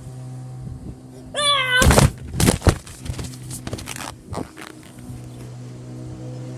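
A short high-pitched squeal, then a cluster of loud thumps and knocks over about a second, followed by a few lighter knocks, over a steady low hum.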